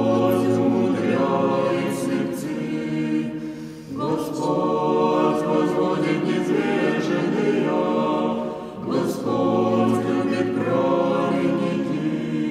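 Church choir singing Russian Orthodox chant a cappella, in sustained phrases that break and begin again about every four to five seconds, with a low bass note held under the start of some phrases.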